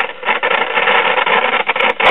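Sears Silvertone model 5 AM tube radio putting out loud, crackling static from its speaker, like a thunderstorm. It is the sign of silver migration in the mica capacitors built into the base of its IF transformer, which is leaking voltage from the primary winding to the secondary.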